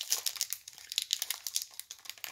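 Foil wrapper of a 2019 Panini Prizm football card pack crinkling and tearing as it is opened by hand, a quick run of small crackles.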